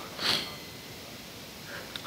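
A man's single short sniff about a quarter second in, close to the microphone.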